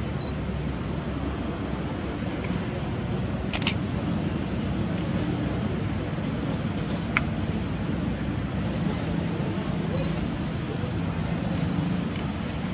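Steady low outdoor background hum with indistinct distant voices, broken by two short sharp clicks, one about a third of the way in and one a little past halfway.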